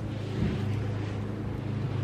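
A steady low hum with a faint hiss behind it, with one soft thud about half a second in.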